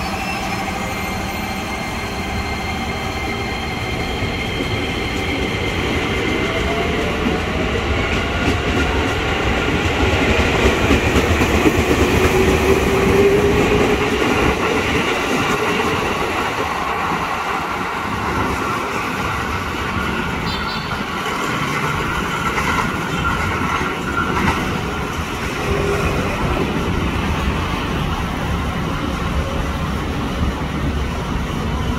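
Electric commuter train, a JR 205 series KRL set, running along the station track: a steady rumble, with motor tones gliding up in pitch a few seconds in. It grows loudest about halfway through, then eases.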